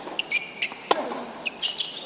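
Tennis rally on a hard court: one sharp racket-on-ball hit about a second in, with short high squeaks of the players' shoes on the court before and after it.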